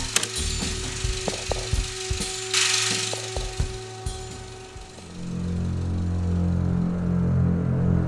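Soundtrack sound design: scattered sharp clicks and knocks with a short hiss about two and a half seconds in. About five seconds in it gives way to low, droning music under the logo animation.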